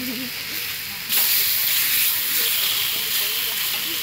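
Marinated beef sizzling on a hot flat-top griddle; the sizzle jumps louder about a second in as another slice of meat is laid on.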